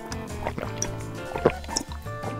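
Background music over a few short liquid sounds of a child drinking juice from a glass, the sharpest about one and a half seconds in.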